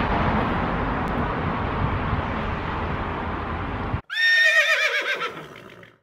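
Steady outdoor background noise, then after a sudden cut about four seconds in, a whinny: a loud, high, quavering call that falls in pitch and fades out over about two seconds.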